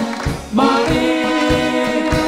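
Live brass band with accordion playing a polka: full held chords over a steady low oom-pah beat of about four strokes a second. About half a second in, one chord breaks off and a new one sets in.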